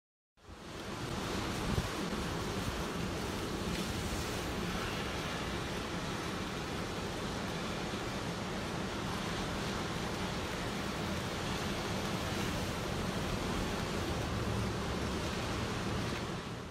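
Rough, storm-driven surf breaking on a beach, a continuous rush of waves with wind. It fades in about half a second in.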